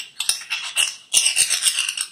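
Hard seashells clinking and rattling against one another in quick runs of crisp clicks, with a brief lull just before the midpoint and a denser run after it.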